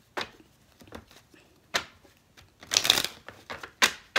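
Tarot cards being shuffled by hand: scattered card flicks, then a short dense run of card-edge clicks about three seconds in.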